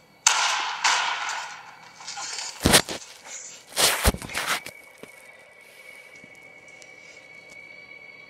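Gunshots in a film soundtrack, played through a portable DVD player's small speaker: a loud blast that dies away over a second or two, then two sharp shots about a second apart. After the shots a steady high tone rings on.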